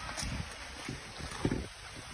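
Steady rush of creek water, with wind buffeting the microphone in irregular low gusts.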